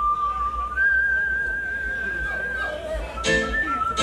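A high, steady whistle tone over the sound system, holding one pitch, stepping higher about a second in and dropping a little near the end, over a deep bass hum.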